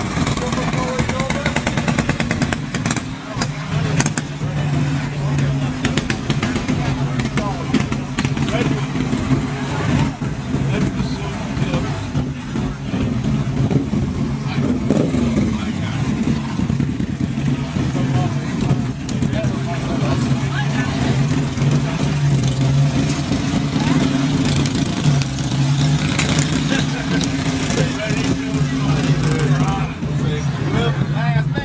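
Road traffic: car engines running as vehicles pass on a busy road, a low steady drone that swells and fades as they go by, with people's voices mixed in.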